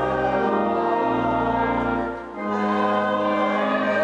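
Congregation singing a hymn with pipe organ accompaniment, in long held notes over a sustained bass, with a short break between lines about halfway through.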